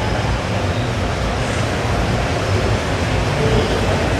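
Steady background noise of a large auditorium during a pause in the judge's calls: an even rumble and hiss with no distinct event.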